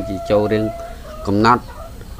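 A long, steady, pitched call in the background, held until about a second in, under a man speaking.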